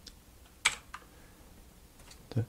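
Computer keyboard keys pressed: a sharp click just over half a second in, then a fainter one about a third of a second later.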